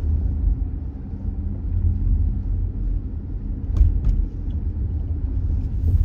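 Steady low rumble of a car driving at low speed, heard from inside the cabin: tyre and road noise, with two short clicks a little under four seconds in.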